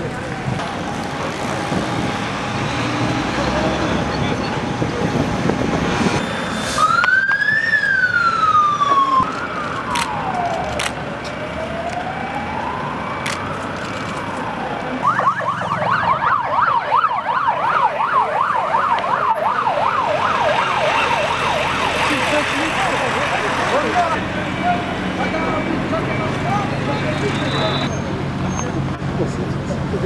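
Police siren sounding over street traffic noise. About seven seconds in it starts as a slow wail rising and falling in pitch, then about fifteen seconds in it switches to a fast yelp that lasts about nine seconds.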